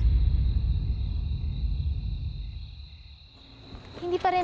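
Low rumbling soundtrack drone with a thin, steady high tone above it, fading away over the second half.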